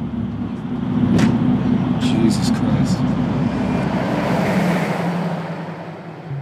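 Road and engine drone heard from inside a moving van, a steady low rumble with a few sharp clicks or knocks in the first half and a hiss that swells and fades toward the end.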